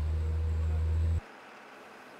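Forestry forwarder engine running with a steady low drone as its tracked wheels roll over log mats; the sound cuts off suddenly a little over a second in.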